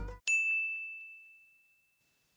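Background music cuts off, then a single bright bell-like ding sounds once and rings away over about a second and a half: an editing sound effect.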